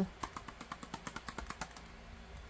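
Small paper-wrapped gift box shaken and tapped by hand: a quick run of light clicks, about eight to ten a second, stopping near the end. It sounds solid, with nothing rattling loose inside.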